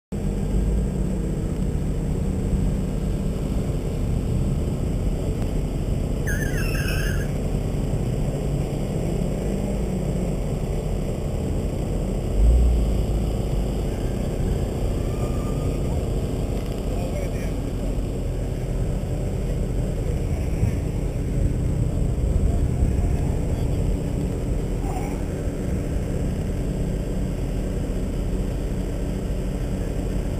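BMW M3 convertible's engine idling steadily, heard close through a hood-mounted camera, with a brief low thump about twelve seconds in.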